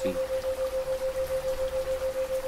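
Recorded rain sound with a steady pure tone near 528 Hz held over it. The sound pulses about seven times a second, a 7 Hz isochronic tone meant for theta-wave relaxation.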